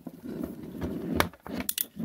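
A long coiled probe lead with clip leads being gathered up and lifted by hand, rustling, with a few sharp clicks in the second half.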